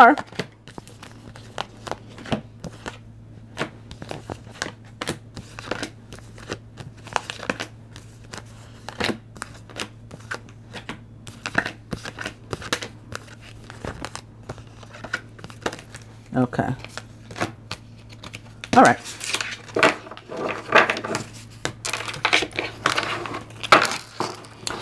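Oracle cards being shuffled and handled on a table: a long run of light, irregular card clicks and rustles. A low steady hum runs underneath.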